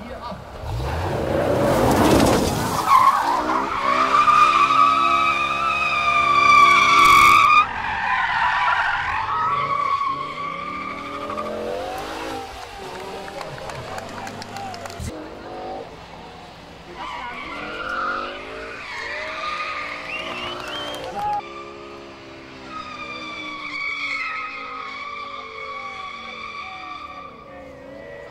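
BMW M5 (E60) with its V10 engine being drifted: the engine revs up and down under power while the tyres give long squeals, in several separate slides. The squeal stops abruptly about seven and a half seconds in.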